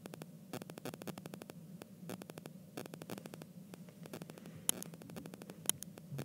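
Stylus tip ticking and scratching on an iPad's glass screen as quick pen strokes are drawn: clusters of faint clicks about once a second, with a few sharper taps near the end, over a low steady hum.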